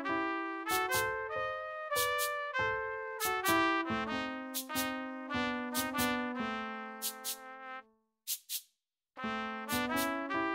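Instrumental background music with a steady beat of sharply struck notes. It breaks off about eight seconds in and starts again about a second later.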